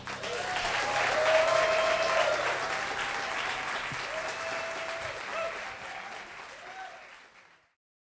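Audience applauding and cheering, with a few whooping voices riding over the clapping; it swells in the first couple of seconds, then dies away and cuts off shortly before the end.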